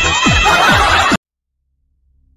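Electronic dance music with a fast, evenly repeating beat of falling bass drops, about three a second. It cuts off abruptly a little over a second in, leaving silence.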